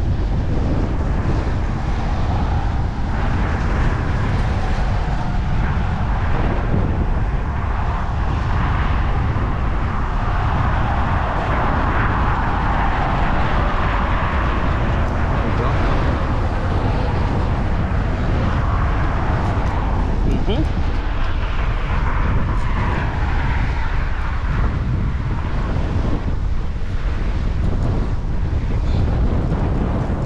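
Wind buffeting the microphone over the sea below, with a passing vehicle-like sound that swells to a peak around twelve to fourteen seconds in and then fades.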